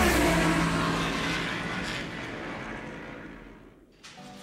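Sound effect of a speeding racing machine rushing past: a loud whoosh with an engine-like tone that drops in pitch, then fades away to nothing over about four seconds.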